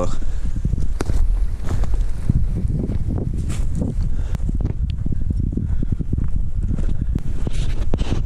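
Footsteps of hikers walking up a forest trail, an uneven run of short steps and scuffs, over a steady low rumble on the handheld camera's microphone.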